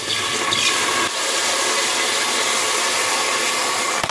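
Whisky poured into an empty, very hot cooking pot, hissing and sizzling loudly and steadily as it boils off on the hot metal, then cutting off suddenly at the end.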